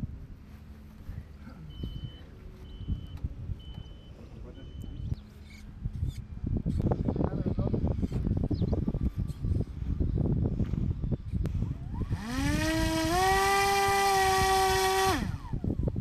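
Electric motor and nose propeller of an RQ-11 Raven hand-launched drone running up before launch: a buzzing whine that rises in pitch, steps up once, holds steady for about two seconds, then drops away about a second before the end. Before it there is only low, uneven noise with a few small clicks.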